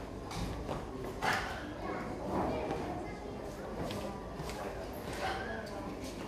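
Several irregular sharp slaps and stamps from a Five Ancestor Boxing (Ngo Cho Kun) form performed on a hard tiled floor, ringing in a large hall, over background talk from onlookers.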